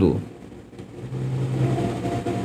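The end of a man's spoken phrase, then a steady low motor hum that comes in about a second in and holds one pitch.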